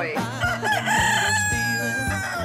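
A rooster crowing: one long held call that slides slightly down in pitch toward the end, over a music bed.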